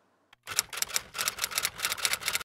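Typewriter keystroke sound effect: a rapid run of clacks, about eight a second, beginning about half a second in.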